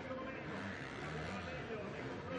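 Motocross bike engines revving and easing off as the riders race up the dirt track, heard faintly and steadily with no sharp bangs.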